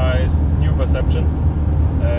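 Steady low rumble of engine and road noise inside the cabin of a Mercedes Sprinter 4x4 camper van driving on a highway, with a man talking over it.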